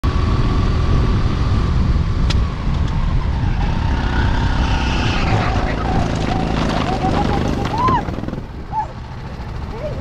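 Go-kart engine running hard on track, a loud low rumble of rapid firing pulses. About eight seconds in it falls away as the kart slows.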